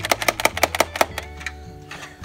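A fast run of hard plastic clicks, about ten a second, lasting about a second, as parts of a toy playset's slide are handled and moved, with steady background music underneath.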